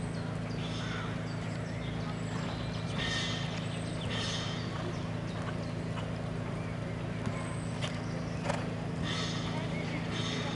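Hoofbeats of a horse cantering on an arena's sand footing, with a few sharper knocks in the later part, over a steady low hum.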